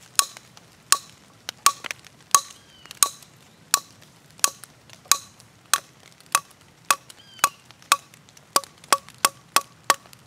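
Spine of an open Spyderco Tenacious folding knife struck again and again on a wooden board in a spine whack test of its liner lock: about seventeen sharp knocks, each with a short ring, coming faster near the end. The liner lock holds and does not fail.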